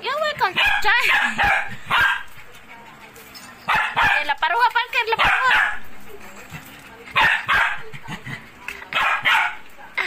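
A dog barking and yipping in play, in four short bouts.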